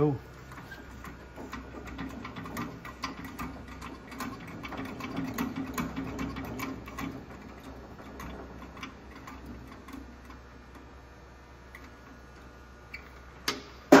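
Hydraulic cam bearing installer pressing a cam bearing into a small-block Chevy block. It makes a run of irregular clicks and ticks with a low hum for a few seconds in the middle, and one sharper click near the end.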